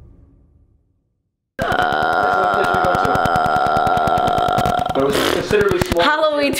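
Spooky music fades to silence. About a second and a half in, a loud, steady rattling croak from a person's throat starts and holds for over three seconds before breaking into voice near the end: a ghost-girl horror croak.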